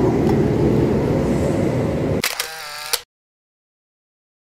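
Steady rumble of kart engines in an indoor karting hall, then about two seconds in a phone camera's shutter sound, after which the sound cuts off to dead silence.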